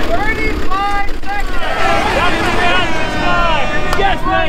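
Several voices shouting and whooping over one another, over the low steady hum of an idling engine.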